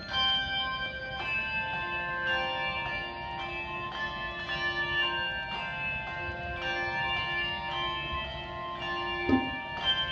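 A handbell choir playing a tune: overlapping ringing notes struck in a steady rhythm, each note sustaining under the next. A sharp thump sounds near the end.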